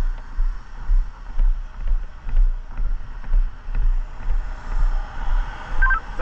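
Low rumble of wind and handling noise on a body-worn camera's microphone, swelling and fading about once a second, with motorway traffic noise underneath.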